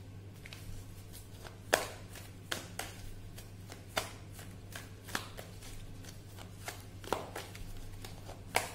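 Deck of tarot cards being shuffled by hand: irregular sharp slaps and flicks of the cards, sometimes several in quick succession, loudest about two, four and seven seconds in. A low steady hum runs underneath.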